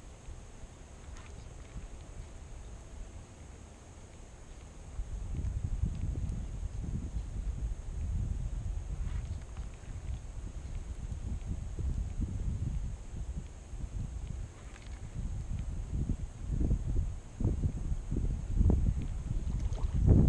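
Wind buffeting the microphone: a low, gusting rumble that picks up about five seconds in and rises and falls.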